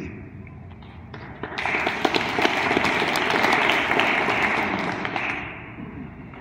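Audience applauding, starting about a second and a half in and dying away near the end.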